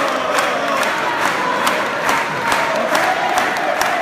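A crowd of supporters chanting and cheering together, with sharp rhythmic beats about twice a second keeping time.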